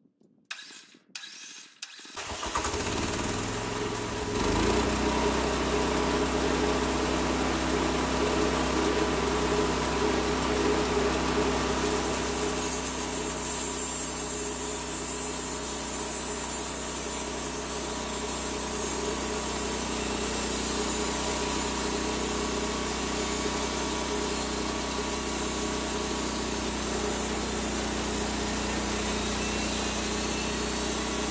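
Gasoline engine of a homemade band sawmill starting: a few short cranking sounds, then it catches about two seconds in and rises to speed about four seconds in. It then runs steadily under load as the band blade cuts through a live oak log.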